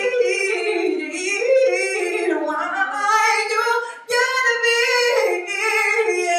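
A woman singing a soul ballad live through a microphone, in long sliding vocal runs with a short break about four seconds in.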